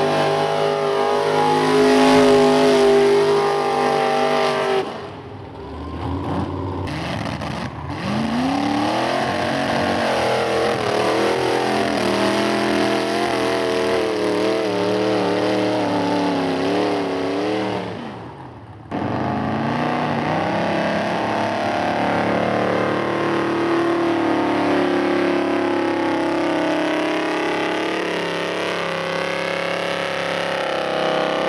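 Mud bog trucks' engines revving hard at high rpm as they drive through deep mud, the pitch climbing and wavering with the throttle. The sound drops out briefly about five seconds in and again just before nineteen seconds, each time changing to another vehicle's engine.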